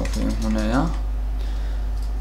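Keystrokes on a computer keyboard as text is typed and deleted, with a steady low hum underneath.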